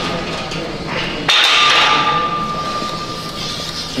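Barbell clanging against a steel squat rack, one sharp metal strike about a second in that rings on and fades over about two seconds.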